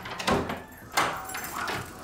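A wooden front door being unlatched and pushed open, with two sharp clicks or knocks from the latch and door, about a third of a second and a second in.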